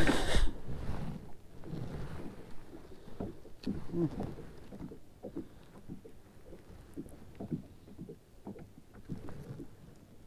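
Small clicks, knocks and rustles of hands unhooking a largemouth bass aboard a kayak, after a loud, brief burst of noise right at the start.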